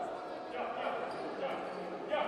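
Futsal game in a large hall: players' voices calling out, with the ball being kicked and bouncing on the wooden court, and a light knock of the ball about one and a half seconds in.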